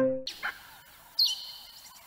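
Silver Lion video slot sound effects: a win jingle fades out just after the start, then about a second in a short, high, bird-like chirp drops in pitch and holds briefly.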